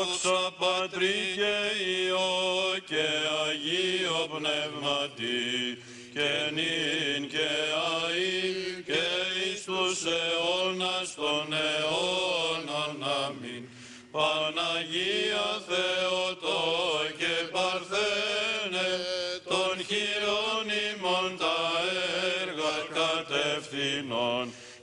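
Orthodox clergy chanting a Byzantine liturgical hymn in Greek, a slow, ornamented line with the voices gliding between notes. It pauses briefly about six and again about fourteen seconds in.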